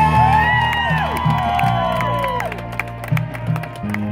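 Marching band show music from the front ensemble: sustained low electric bass and keyboard notes, with several gliding tones that rise and fall over the first two and a half seconds. Light percussion clicks come in during the second half.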